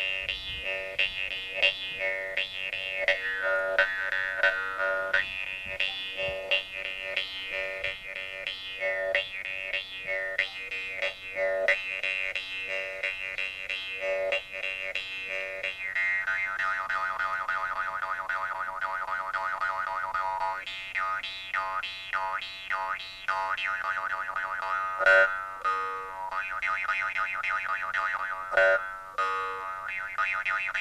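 Several Yakut khomus (metal jaw harps) played together: a steady twanging drone with a whistling overtone melody on top and a quick plucked rhythm. About halfway through the overtone melody moves lower.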